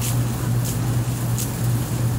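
Outdoor air-conditioning condenser unit running: a steady low hum under its fan noise.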